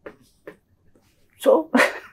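A pause with little sound, then a man says "So" and breaks into a laugh near the end.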